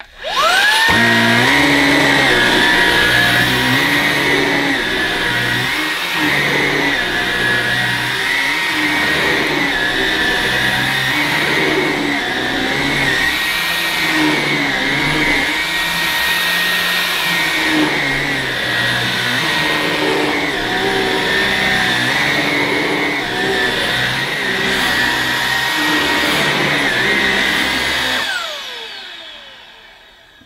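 Halo Capsule cordless stick vacuum's brushless motor spinning up with a rising whine, then running steadily on its medium setting with the motorised brush roll on a short-pile carpet. Near the end it winds down with a falling whine as it is switched off.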